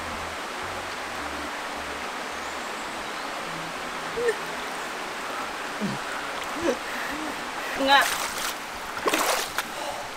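Steady rushing of a small river's waterfall. Through it come a few short gasps and squeals from a woman standing in the freezing water, then splashing and louder cries near the end as she scrambles out.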